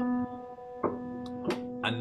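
A single piano note held and slowly dying away, with two short taps about a second in and half a second later.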